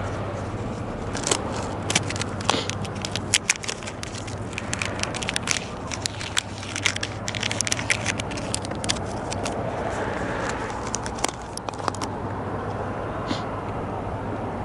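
Crinkly plastic bait packaging crackling and rustling as it is handled, in many quick sharp clicks that stop shortly before the end, over a steady low hum.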